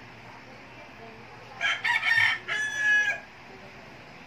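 A rooster crowing once, a call of about a second and a half in several short segments ending on a held note, near the middle.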